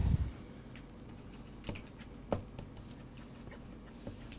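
Stylus writing on a pen tablet: soft scratching with a few sharp little taps as strokes are put down. A dull low thump comes right at the start.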